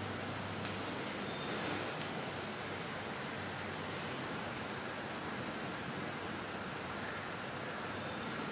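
Steady, even hiss of room tone with electric pedestal fans running.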